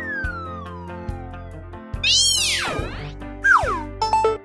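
Children's background music with cartoon sound effects: a long falling glide in pitch, then a loud swoop that rises and falls about halfway through, and a short falling swoop near the end.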